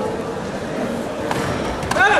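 Indoor sports-hall background of voices, then near the end two sharp smacks as taekwondo fighters close in and strike.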